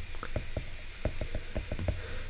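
Stylus tip ticking on an iPad's glass screen while handwriting: a quick, irregular run of light clicks.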